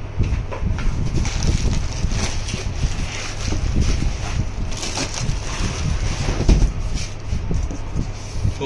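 Plastic bags crinkling and foam packing rubbing as a wrapped microscope and its head are lifted out of a cardboard carton, with a louder thump about six and a half seconds in.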